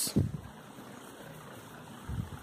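A faint, steady low machine hum with a soft hiss under it, after a brief low sound at the very start.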